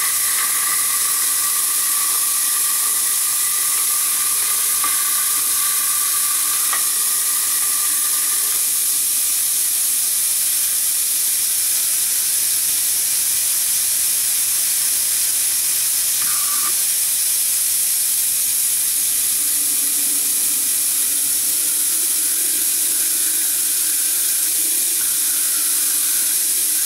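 Compressed-air-driven Vacula vacuum tool hissing steadily as it sucks brake fluid out of a master cylinder reservoir through a tube. A whistling tone sits over the hiss for about the first eight seconds, and a lower tone comes in near the end.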